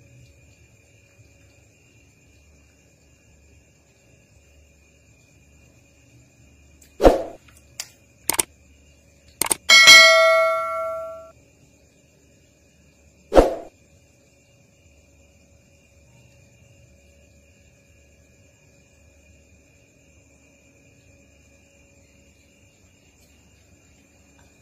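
A sharp knock and two quick clicks, then a bright bell-like ding that rings out over about a second and a half, and one more knock a few seconds later: the click-and-bell sound effect of a subscribe-button animation.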